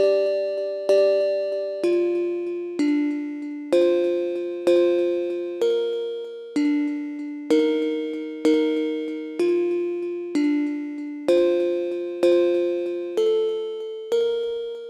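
Synth bell chords playing a minor-key progression (one, seven, six, seven), struck about once a second with each chord played twice before the next, every strike ringing and fading. The bell is still dry, before its vocoder, phaser and reverb processing.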